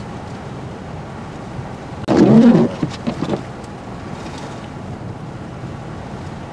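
Steady hiss of wind noise on the microphone, with a brief loud voice-like cry about two seconds in, followed by a few short clicks.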